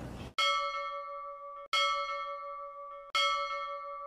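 A bell struck three times, about a second and a half apart, each strike ringing on and fading before the next.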